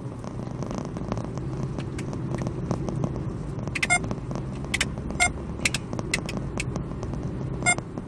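Steady low drone of a car's engine and tyres heard from inside the moving car. A handful of sharp, irregular clicks comes between about four and eight seconds in.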